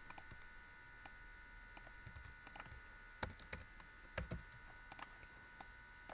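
Faint computer keyboard typing and mouse clicks: irregular sharp keystrokes, a few a second, a little louder in the second half.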